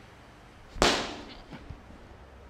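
A single sharp, loud slap-like crack from a kung fu practitioner's strike or stamp, about a second in, followed by two faint knocks as he drops into a low stance.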